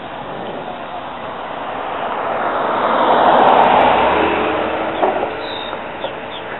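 A road vehicle passing by: its engine and tyre noise builds to loudest about midway, then fades away.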